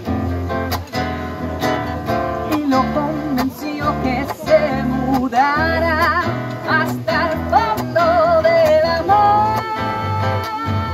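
Live duo music: a strummed nylon-string classical guitar and a violin-shaped electric bass play a steady rhythm. From about halfway a singing voice with vibrato comes in, ending on a long held note near the end.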